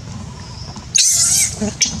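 Baby macaque screaming in distress as it is grabbed and carried off. About a second in there is a loud, wavering, high-pitched shriek lasting about half a second, followed by a couple of shorter, lower cries and a sharp click near the end.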